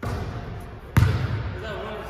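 A basketball bounces once on the hardwood gym floor about a second in, with a short echo in the large hall.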